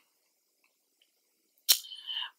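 Near silence, then a single sharp mouth click, a lip smack as the lips part to speak, near the end.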